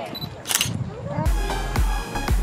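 A short camera-shutter click sound effect about half a second in. Just past a second in, background music with a deep, pulsing bass beat starts.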